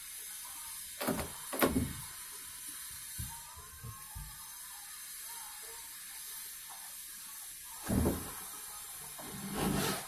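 Knocks and clatters from hand work at a sliding bedroom door: two sharp knocks a little over a second in, a few light taps around three to four seconds, and more knocks near eight seconds and just before the end.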